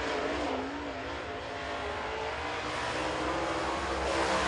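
A dirt late model race car's V8 engine running at speed. Its note is fairly steady and grows slightly louder toward the end.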